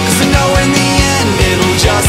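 Pop-punk rock band recording playing, with a fast, steady drumbeat under guitars.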